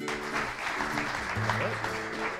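Audience applauding, starting suddenly, with light plucked-string intro music carrying on underneath.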